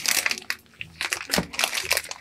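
A clear vacuum-sealed plastic bag crinkling as hands turn and handle the compressed pillow inside it. The rustling is irregular, with a couple of sharper crackles about halfway through.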